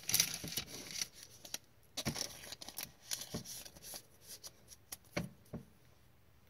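A thick jersey-relic trading card being handled between the fingers: soft rustling and scraping, with a few light sharp clicks of card stock about two, three and five seconds in.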